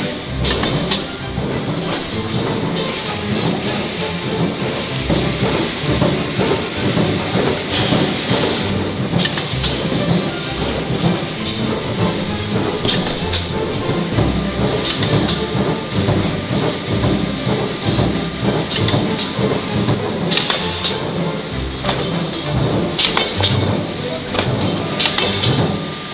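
Background music over the running noise of a steel roll-forming line shaping perforated rack angle, with short hissing bursts now and then.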